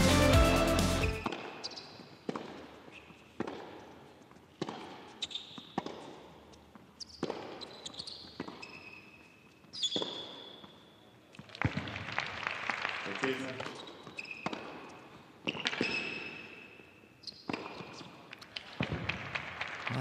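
Theme music that ends about a second in, then a tennis rally on an indoor hard court. Rackets strike the ball at a steady back-and-forth pace, and high shoe squeaks sound between the shots as the players change direction.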